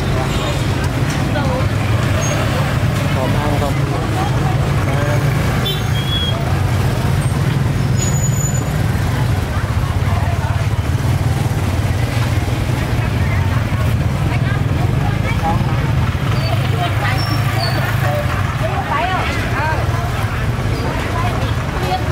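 Busy market street ambience: people talking among themselves, with motorbike engines running and a steady low hum throughout.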